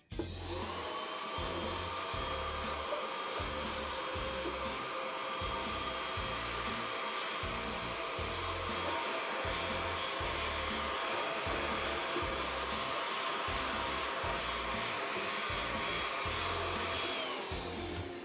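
Bissell handheld vacuum switched on and running with a steady whine, then winding down in pitch near the end as it is switched off.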